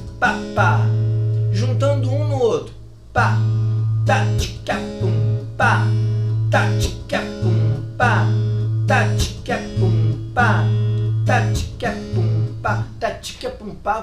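Steel-string acoustic guitar fingerpicked in a swung pattern on an A major seventh chord. A low A bass note with three plucked treble notes alternates with a percussive slap of the picking fingers against the strings, repeating in a steady rhythm.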